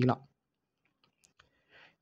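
A narrating voice finishes a word, then near silence broken by a few faint, short clicks about a second in and a brief faint hiss near the end.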